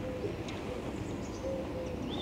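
A pigeon cooing faintly, a short coo at the start and another about a second and a half in, over low outdoor background rumble.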